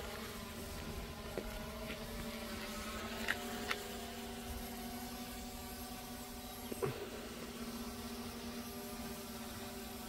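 DJI Mini 3 Pro quadcopter flying overhead, its four propellers giving a steady, even hum with a few faint ticks along the way.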